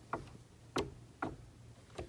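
Three light clicks, about half a second apart, from a lockable shed door handle and latch being worked while it is locked with its key, so the handle won't turn.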